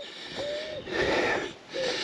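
A man's breathy exhale, like a heavy sigh, lasting about half a second and starting just under a second in. A short, faint hummed note comes before it.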